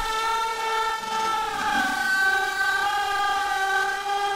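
Sustained synthesizer pad chords in a breakdown of an electronic dance track, with the drums and bass dropped out; the chord shifts to a new pitch about two seconds in.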